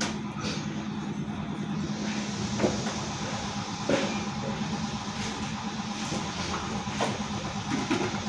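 Steady outdoor background rumble with a low hum that fades about two seconds in, and a few soft knocks from handling things, near the middle and toward the end.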